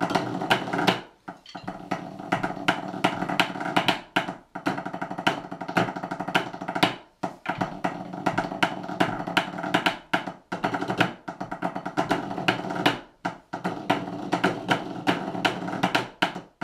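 Pipe band drummers playing a drum score together with sticks on rubber practice pads: fast, dense strokes and rolls, broken by a short gap about every three seconds at the end of each phrase.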